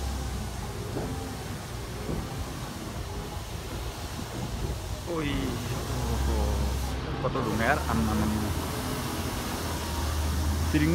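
Vehicle engine running low and steady as it creeps along a rough gravel mountain road, heard from inside the cabin. Voices come in briefly about halfway through.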